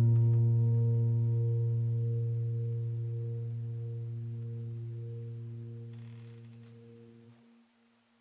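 Background piano music's closing low note ringing on and slowly fading away, dying out about seven and a half seconds in.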